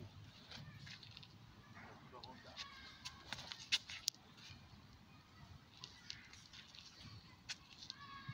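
Faint, distant children's voices and shouts. A few sharp clicks or slaps stand out about three to four seconds in.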